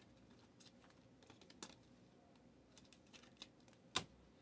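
Faint, scattered clicks and taps of trading cards being handled and flipped through by hand, with a sharper click near the end.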